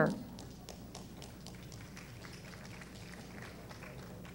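Quiet hall ambience: a steady low hum with faint, scattered taps and clicks.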